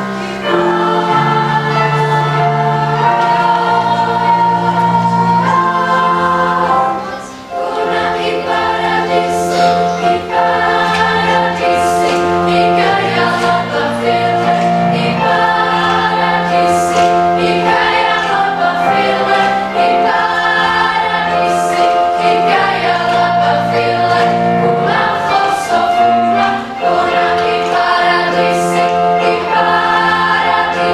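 Children's choir singing in several parts, held chords changing every second or two, with a brief drop in loudness about seven seconds in.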